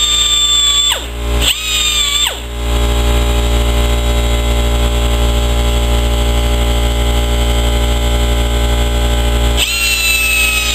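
High-speed rotary tool with a small grinding bit whining against a welded steel part. It stops twice early on, its pitch falling each time as it spins down, then gives way to a steady rough machine noise over a low hum. The whine starts up again near the end.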